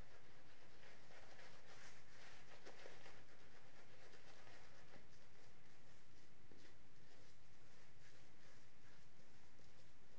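Shaving brush swirling wet lather over the face: a soft, irregular scratchy swishing of bristles against the skin.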